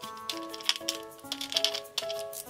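Background music with a simple melody of held notes, over a few light clicks and crinkles from a clear plastic doll bottle being handled.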